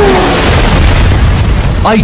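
A loud cinematic boom with a heavy low rumble, a film-soundtrack sound effect, holding steady until a man's voice resumes near the end.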